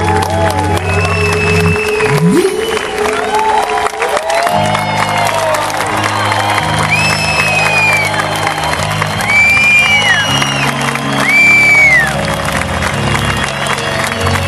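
A live band holding sustained closing chords, with an audience applauding and cheering over it and several long piercing whistles rising out of the crowd, the last three between about seven and twelve seconds in.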